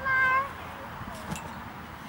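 A child's short high-pitched squeal, rising and then held for about half a second at the start.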